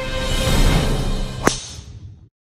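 A swelling whoosh that builds for about a second and a half and ends in one sharp crack of a golf club striking the ball. The sound fades off straight after.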